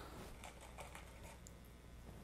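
Near silence, with faint light handling noises and a few soft clicks as wet roundwound bass strings are lifted from a bowl and laid on a microfibre towel.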